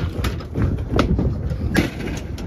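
Knocks and clatter from cattle shifting about in a metal livestock trailer, three sharp knocks about three-quarters of a second apart over a low rumble.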